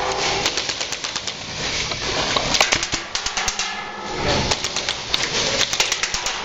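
Airsoft gunfire: irregular sharp clicks and snaps of shots and BBs striking, with a quick run of clicks about two and a half seconds in, over steady background noise.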